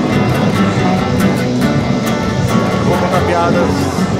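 Loud live band music, with guitar and drums playing.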